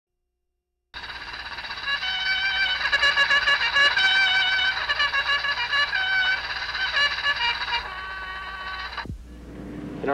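Brass music playing held, melodic notes, starting about a second in and cutting off suddenly just after nine seconds.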